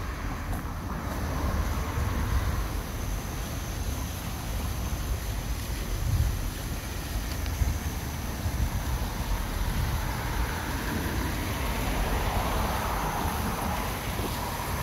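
Wind rumbling on a handheld microphone over a steady outdoor rushing noise, which grows louder over the last few seconds.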